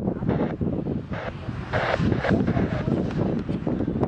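Jet engine noise of a McDonnell Douglas MD-82, with its Pratt & Whitney JT8D turbofans, rolling out on the runway after touchdown. The sound swells and fades unevenly, most strongly about two seconds in, with wind buffeting the microphone.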